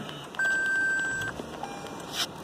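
Lexus ES 350's electronic start-up chime as the push-button start is pressed with a foot on the brake: one steady, high beep lasting about a second, then a short lower tone near the end.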